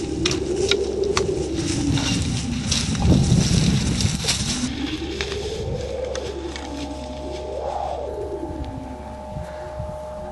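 Dry stalks and twigs crackling as someone pushes through brush, most of it in the first half, under slow gliding tones that swell up and down in pitch a few times. The tones are the film's sound design.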